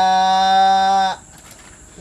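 A man's voice holding one long, level 'ehh' for about a second and a half, a hesitation filler, then stopping.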